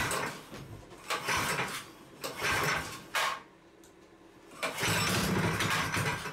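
Small single-cylinder Predator go-kart engine being pull-started: several rope pulls in a row, each cranking it over briefly. The last, longest pull comes about five seconds in, and the engine does not settle into running.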